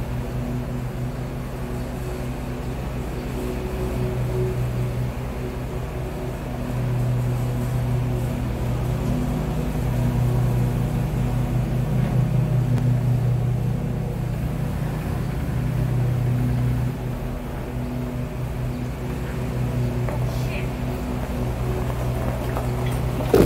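A Jeep engine running steadily, its hum swelling and easing in level.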